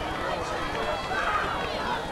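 Distant, indistinct voices over a steady background of game ambience and hiss.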